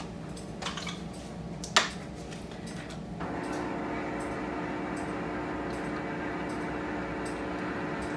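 A refrigerator's ice maker filling: a steady hum with several held tones starts about three seconds in. A single sharp click comes a little before it.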